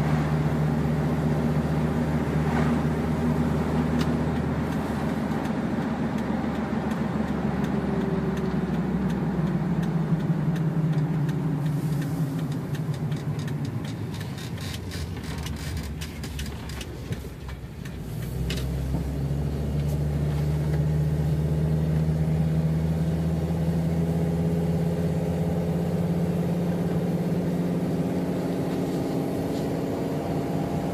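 Car engine and road noise heard from inside the cabin while driving. The engine note falls away as the car slows for a turn, with a run of sharp clicks, then rises again as it pulls away and settles into a steady cruise.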